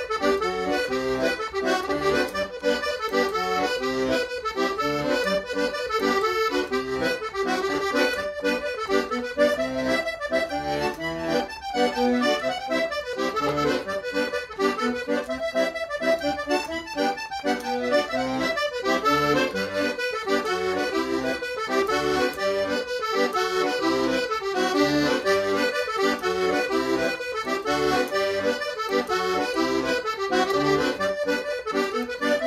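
Solo piano accordion playing a brisk Scottish traditional tune, a quick stream of melody notes over a steady accompaniment.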